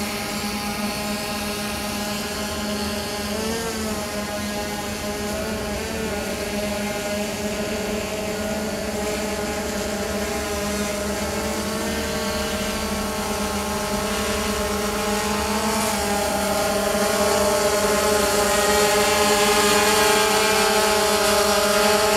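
DJI Phantom 2 quadcopter hovering, its four motors and propellers making a steady multi-tone whine. The pitch wavers briefly a few seconds in as the motors adjust. It grows louder over the second half as the drone closes in.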